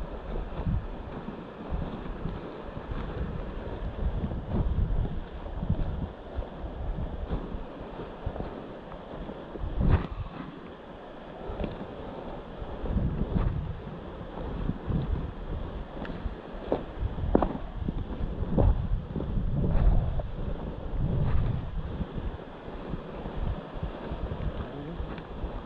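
Wind buffeting the microphone in uneven gusts, with a few short knocks along the way.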